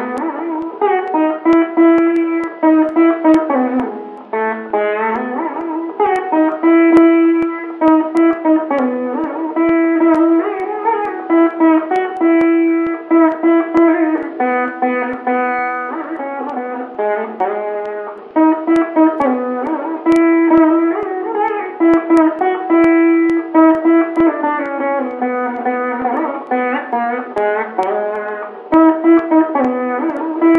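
Instrumental music: a plucked string instrument playing a melody with quick runs of notes and frequent sliding bends in pitch.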